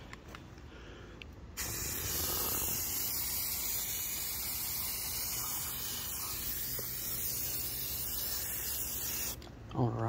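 Aerosol spray paint can hissing in one continuous spray of about eight seconds, starting about a second and a half in and cutting off near the end.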